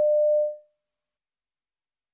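A single electronic beep, one steady mid-pitched tone lasting about half a second and then fading out: the signal that marks the start of each recorded listening-test extract.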